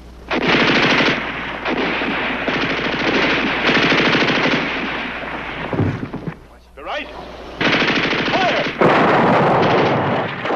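Belt-fed machine gun firing long bursts. The firing breaks off briefly around six seconds in, then resumes loudly.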